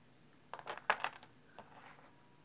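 Glass-beaded earrings with metal hooks set down on a hard tabletop: a quick cluster of five or six light clicks and clinks over about a second.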